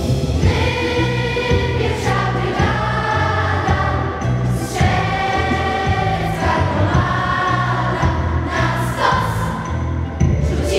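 Music: a choir singing a song with instrumental accompaniment over a steady, repeating bass beat.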